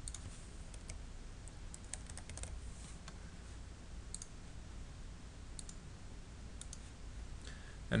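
Computer keyboard keys and mouse buttons clicking: a few scattered, faint keystrokes and clicks over a steady low hum.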